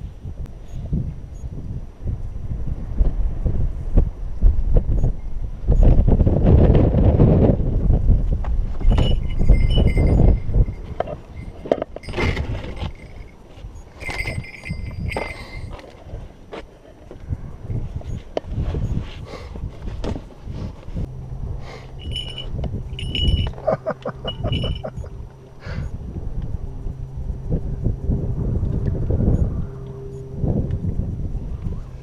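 Strong wind buffeting the microphone with a heavy rumble, easing after about ten seconds. It is followed by scattered clicks, knocks and short metallic clinks and ringing tones as a car's hatchback is opened and gear is handled, with a steady low hum in the last third.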